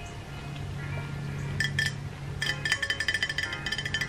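Soft background music, with a run of quick light clinks from a glass Frappuccino bottle being handled, thickest in the last second or so.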